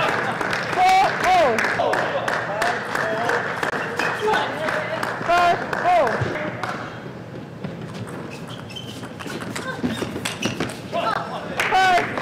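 Table tennis rally: a celluloid-plastic ball clicking quickly off paddles and the table, with short squeaks among the hits.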